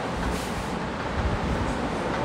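Steady background rumble and hiss, louder in the low end, with a brief brighter scratchy burst about half a second in.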